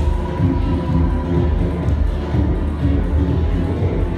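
Loud electronic dance music from a nightclub sound system during a DJ set, with a steady bass beat.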